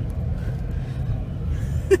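Steady low rumble of a car cabin while driving slowly: engine and tyre noise heard from inside the car.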